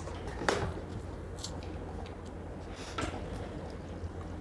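An orange being peeled by hand: a few brief soft tearing and squishing sounds of peel and pith, the clearest about half a second in, over a low steady hum.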